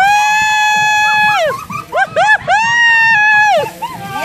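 Human screaming from the shock of ice water being dumped over people: two long, shrill, held shrieks with short yelps between them.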